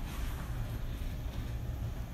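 A low, steady rumble with no distinct knocks or tones in it.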